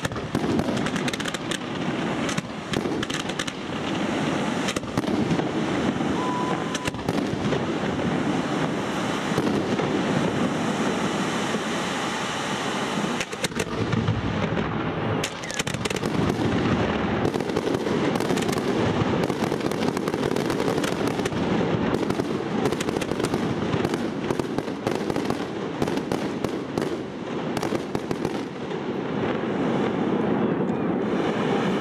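Fireworks display: a dense, unbroken barrage of launches and bursting shells, many sharp bangs in quick succession, with a brief lull about halfway through.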